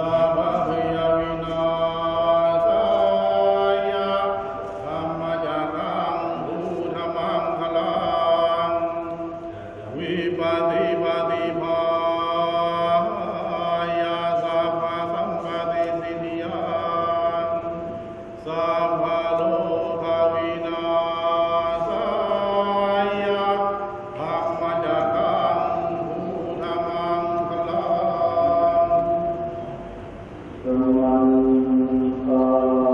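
Buddhist ritual chanting: several voices chant together in a steady, held monotone, pausing briefly for breath now and then.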